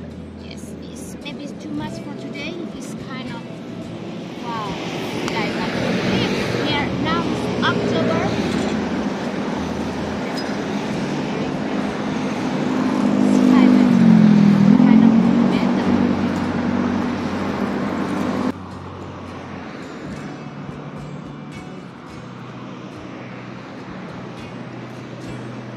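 Background music, with a loud motor vehicle passing over it. The vehicle swells up for several seconds, its engine pitch dipping and rising near the middle, then cuts off abruptly.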